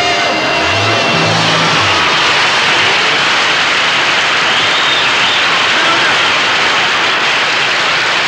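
Studio audience applauding and cheering steadily at the end of a song, with a few low held notes from the band in the first two seconds.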